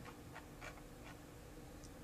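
Very quiet room hum with a few faint computer mouse clicks.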